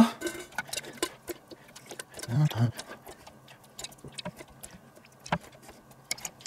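Grilled meatballs picked by hand from a stainless steel wire grill basket and dropped into a stainless steel bowl: scattered light clicks and taps of meat and fingers against metal, with a brief murmur near the middle.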